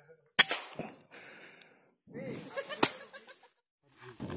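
Scoped air rifle firing: a sharp crack about half a second in, followed shortly by a dull thump, then a second sharp crack near three seconds.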